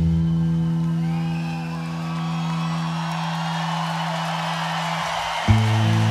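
Electric bass and guitar in a slow rock jam: one long low note is held and slowly fades, over cheering and whoops from an arena crowd. Near the end, new low notes are struck sharply.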